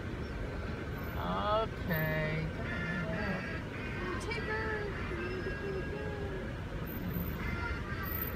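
A voice with music over a car's low, steady running noise.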